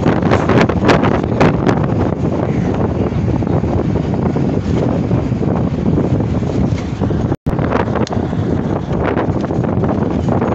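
Wind buffeting a phone's microphone at an open window of a moving bus, over the rumble of the bus and its tyres on the road. The sound cuts out for a split second about seven seconds in.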